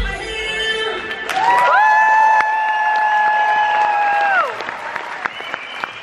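Dance-show music ending on one long held note of about three seconds, which drops away near the end. An audience claps and cheers throughout, and the applause carries on after the note stops.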